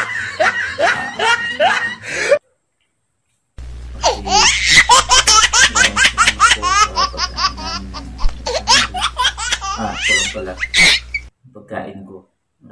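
Loud, rapid laughter in quick repeated bursts, with a sudden silent gap about two and a half seconds in before a longer run of laughter over a low hum.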